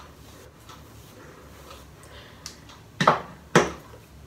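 Faint rustle of a wide-tooth comb drawn through wet curly hair, then two sharp knocks about half a second apart near the end.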